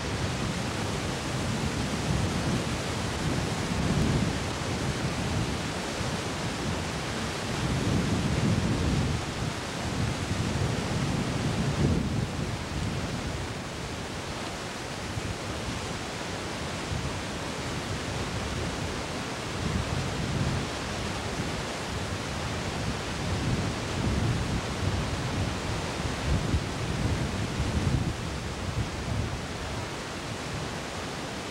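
Wind buffeting an outdoor camcorder microphone: a steady hiss with irregular low gusts that swell and fade every few seconds.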